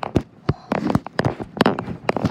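Irregular knocks and rustling from a handheld phone being bumped and swung over bedding and plush toys: handling noise on the microphone.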